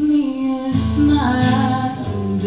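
A young woman's voice singing held notes through a microphone, with an acoustic guitar strummed under it. There is a short break in the singing just before halfway, then a new held note.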